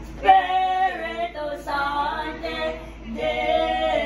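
A group of women's and men's voices singing a hymn together, unaccompanied, in held phrases with short pauses for breath between them.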